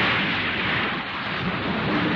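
Animated sound effect of a huge splash of seawater as a giant mobile suit plunges into the ocean: a loud, steady rushing wash of water that eases a little about a second in.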